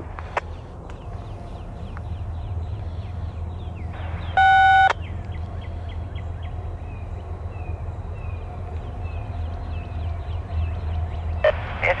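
A loud electronic beep about half a second long from a railroad scanner radio, about four seconds in, over a steady low rumble; faint short chirps repeat a few times a second.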